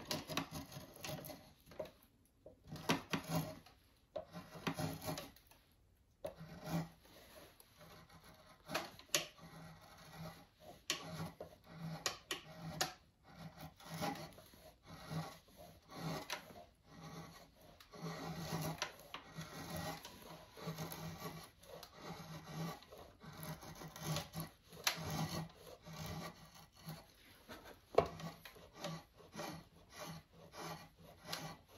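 Drawknife shaving a wooden axe handle held in a shaving horse: a steady run of short scraping pull strokes, roughly one or two a second, as the handle is worked down toward its final shape.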